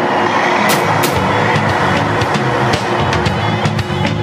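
Background music of a TV advertisement, steady, with a few sharp percussive hits in the first second.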